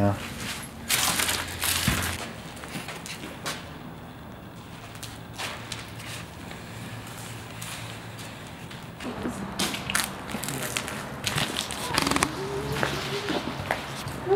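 Footsteps crunching and scraping over a floor strewn with debris and broken glass, heard as scattered crackles and clicks that thicken near the end.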